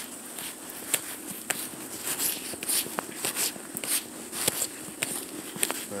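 Footsteps crunching through snow: an uneven run of crunches and sharp clicks.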